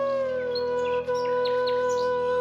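Flute music: a flute holds one long low note, sliding down slightly at first and then steady, over a soft sustained drone. Short bird chirps sound high above it through the second half.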